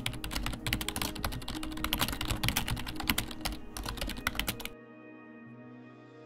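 Rapid computer-keyboard typing clicks as a sound effect for on-screen text being typed out, over steady background music; the typing stops near the end, leaving the music alone.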